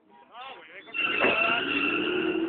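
A Chevrolet Camaro and a Chrysler Cirrus RT pulling away hard from a standing start in a drag race: the sound jumps loud about a second in, with engine noise and a steady high tyre squeal. People shout over it.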